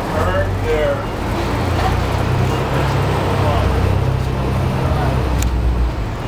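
Low, steady rumble of downtown street traffic, with a heavy engine running close by, under people's voices.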